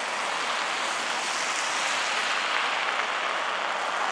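Steady city street traffic noise, growing slightly louder toward the middle.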